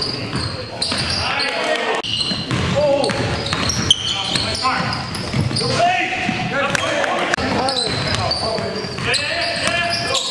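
Live basketball game in a gymnasium: the ball bouncing on the hardwood court among players' footwork, with players' voices calling out, all echoing in the large hall.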